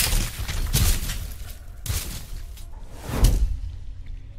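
Whooshing impact sound effects of an animated intro: four swooshes, each landing with a deep thud, about a second apart, the loudest at the start and about three seconds in.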